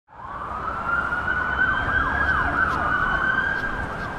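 Emergency vehicle siren: a wail that rises and levels off, crossed by quick up-and-down sweeps, over a low city rumble.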